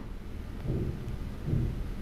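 Low, steady background rumble with two faint soft swells about a second apart, in a short pause between spoken sentences.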